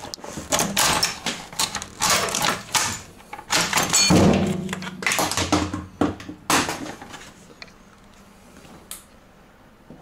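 Irregular clunks, knocks and scrapes of metal parts being handled as the air filter is taken out of its housing on a Ural/Dnepr motorcycle, the loudest scraping about four seconds in. The handling goes quieter over the last couple of seconds.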